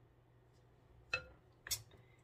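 Two short knocks as a glass baking dish is handled. The first, just over a second in, is a clink with a brief ring. The second, about half a second later, is a duller, noisier knock.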